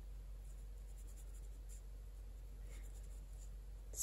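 Faint soft scratching of a round watercolour brush dabbing paint onto paper, over a steady low hum from an electric fan.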